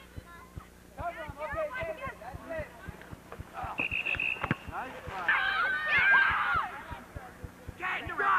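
Outdoor voices of players and spectators calling out, with a single steady whistle blast of about a second roughly four seconds in, as from a referee stopping play, followed by several voices shouting at once.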